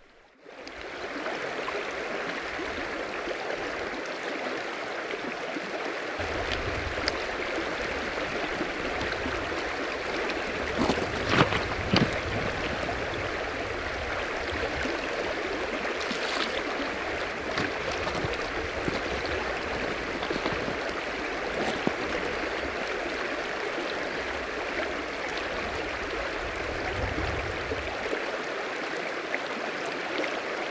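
River water rushing steadily over stones. A few sharp clicks come about eleven to twelve seconds in.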